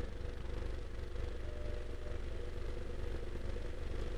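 Steady low hum of background noise with no speech, level and unchanging throughout.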